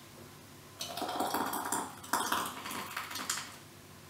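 Hot, thick strawberry-rhubarb jam being poured from a stainless steel Thermomix mixing bowl through a silicone funnel into a small glass jar: wet slopping with a few light clicks and knocks, starting about a second in and stopping shortly before the end.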